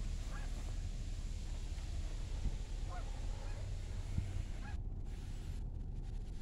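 Faint honking calls of a bird, three short calls a few seconds apart, over a steady low background hum.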